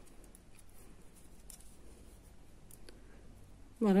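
Faint, scattered clicks and light rustling of metal knitting needles and yarn as stitches are worked by hand.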